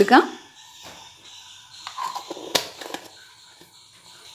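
Low room noise with a few faint clicks and one sharper click a little past halfway, after the tail of a woman's sentence at the very start.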